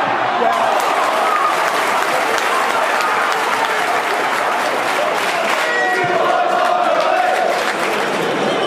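Football stadium crowd: a dense mass of shouting voices and applause in the stands as fans react to a shot at goal, with a held chant-like note near the end.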